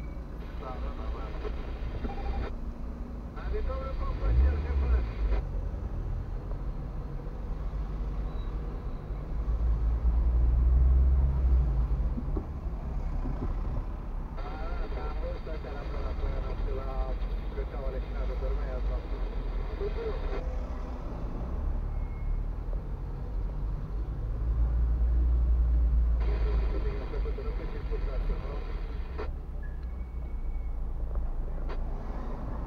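Low rumble of a car's engine and road noise heard from inside the cabin as the car creeps forward in slow traffic, swelling a few times as it moves off. Stretches of muffled talk come and go over it.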